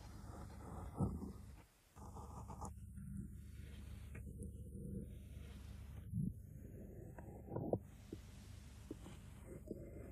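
Japanese hand gouge (maru nomi) paring wood: a few faint cutting scrapes, one about a second in and two more between six and eight seconds, over a low steady hum.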